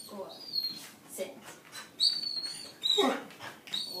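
A 12-week-old puppy whining in several short, high-pitched whimpers while it holds a sit.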